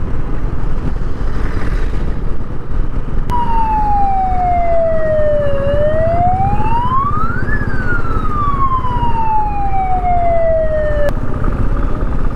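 Ambulance siren in one slow wail: it falls, rises to a high peak, then falls again, starting and stopping abruptly. Underneath it, a motorcycle engine runs steadily with wind noise.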